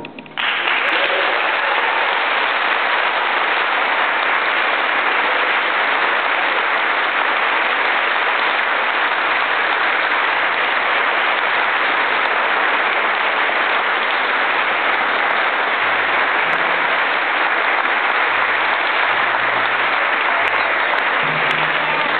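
Audience applause, starting about half a second in and holding steady without letting up.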